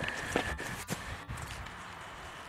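A few faint footsteps and soft scuffs, with low rumble.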